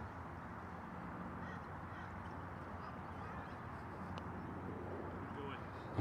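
Quiet outdoor background with a steady low hum and faint distant calls, and a soft tap of a putter striking a golf ball about four seconds in.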